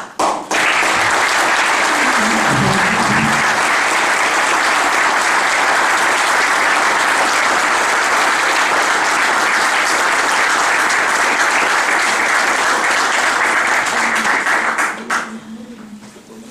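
Sustained applause from a room full of people clapping. It starts just after the start and dies away about fifteen seconds in.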